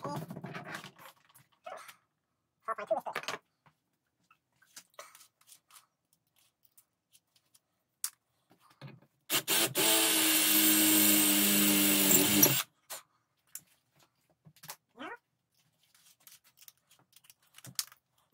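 Cordless drill running steadily for about three seconds, with a constant whine, as a 2 mm bit bores a pilot hole for an M5 thread into the metal peep-sight part held in a vise. Scattered light knocks of tool handling come before and after.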